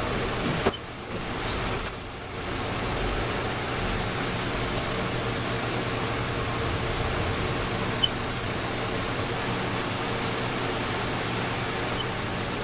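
Steady fan-like rushing noise with a low hum, and one sharp click less than a second in.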